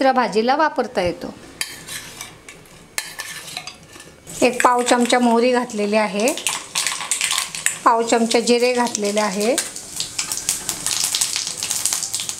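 Hot oil in a black iron kadhai crackling and sizzling as spice seeds go in for a tempering (phodni), the sizzle thickening over the last few seconds.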